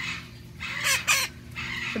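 A pet parrot giving two short, high squawks about a second in.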